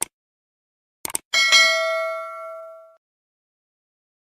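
Subscribe-button animation sound effect: a couple of short clicks, then a bell ding that rings out and fades over about a second and a half.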